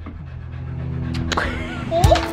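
A dog panting, with background music of held notes swelling louder toward the end.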